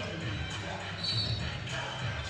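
A basketball being dribbled on a hardwood court over steady arena background sound, with a brief high squeak about a second in.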